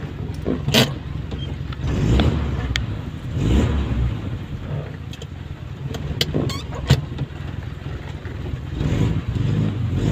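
Car driving slowly along a wet road, heard from inside the cabin: a low engine rumble that swells a few times as it accelerates, with several sharp clicks.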